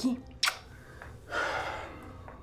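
A person breathing audibly between lines: a short sharp hiss of breath about half a second in, then a longer breathy exhale or sigh near the end, with no voice in it.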